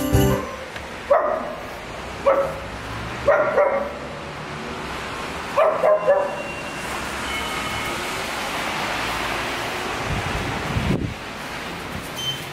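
A dog barking: short single barks, then quick runs of two and three, over the first six seconds, followed by a steady hiss and a low thump near the end.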